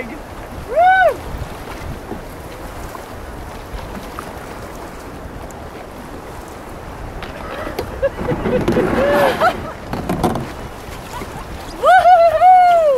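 Steady rush of river rapids around a canoe, with a short high whoop about a second in. From about eight seconds the water gets louder and rougher, with splashing and a brief call.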